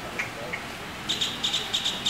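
Small bird chirping: two short chirps, then from about a second in a fast run of high, clipped notes, several a second.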